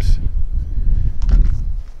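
Wind buffeting the microphone: an irregular, gusting low rumble.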